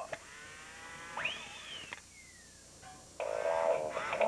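Electronic sound effects from a green robotic frog toy: a faint buzzing tone, then a whistle-like glide that rises and falls, a short falling glide, and from about three seconds in a warbling, croaky electronic voice.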